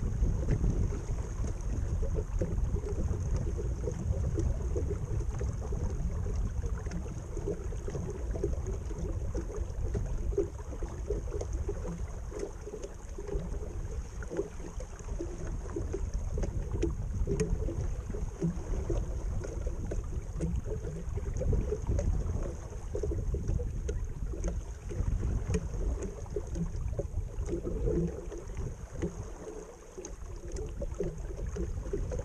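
Wind buffeting the microphone in uneven gusts, with water splashing and gurgling along the hull of a 12-foot flat-iron skiff sailing downwind.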